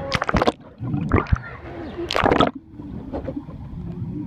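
Water splashing and bubbling against a camera held underwater: three short bursts in the first two and a half seconds, then a quieter, muffled underwater wash.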